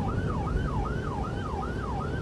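Patrol vehicle's siren on a fast yelp, its pitch sweeping up and down about two and a half times a second, over a low rumble of engine and road noise from the moving vehicle.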